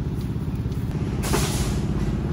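A motor vehicle engine idling steadily, a low pulsing rumble, with a brief hiss about a second and a half in.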